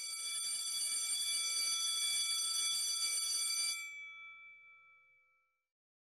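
Electric school bell ringing steadily for about four seconds, then cut off and ringing out over about a second.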